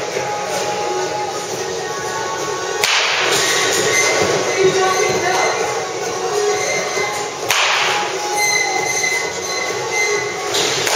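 Two sharp cracks of a wooden baseball bat hitting pitched balls, one about three seconds in and one about seven and a half seconds in, over steady background noise.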